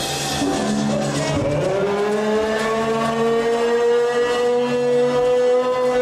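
Live band music at a party: one long held note that slides slowly up in pitch and sustains for about four seconds over a steady chord.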